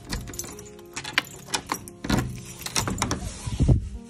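A bunch of keys jangling and clicking in the lock of a wooden door as it is unlocked, with the metal lever handle worked and the door pushed open; a louder knock comes near the end.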